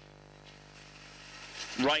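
Faint steady background hum with no distinct event. Near the end a man's voice begins calling the race start.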